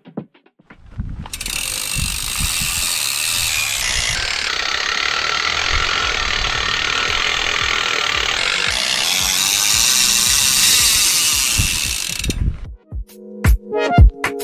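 Mountain bike rear freehub ratcheting as the rear wheel spins, a dense continuous buzz of pawl clicks. It starts about a second in and cuts off suddenly near the end.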